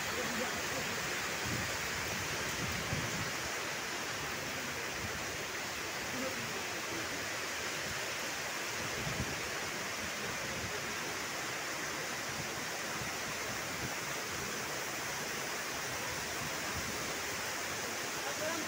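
Heavy rain pouring steadily: a dense, even hiss that holds at the same level throughout.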